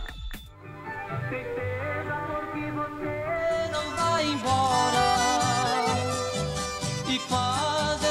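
Gaúcho folk music led by an accordion over a steady bass beat. It starts quietly after a brief pause and grows fuller from about three and a half seconds in.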